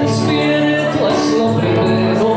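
Music: a man singing into a microphone over a karaoke backing track.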